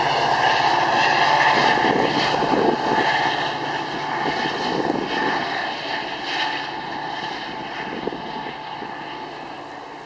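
Metra commuter train pushed by its diesel locomotive at the rear, moving away: a steady engine drone with several held tones that fades as the train recedes.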